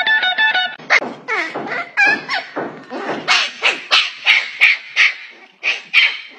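A puppy yelping and yapping in a quick high-pitched series, about three yelps a second at the busiest. A short plucked-guitar music phrase ends just before the yelps begin.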